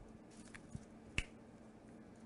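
Quiet room tone with a faint steady hum, broken by one short sharp click a little over a second in, with a couple of softer ticks before it.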